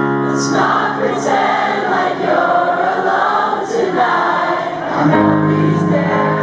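Audience singing along in unison over piano chords during a live rock ballad. The mass of voices fades about five seconds in, leaving the sustained piano chords.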